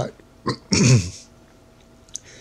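A man clears his throat once, briefly, with a short click just before it.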